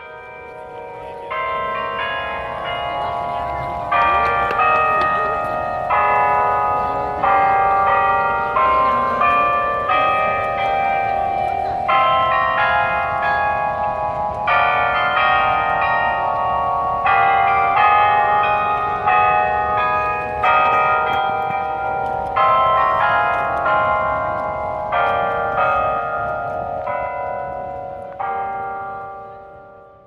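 Delacorte Music Clock's bells playing a tune, a steady run of struck, ringing notes, over faint crowd noise. The sound fades out near the end.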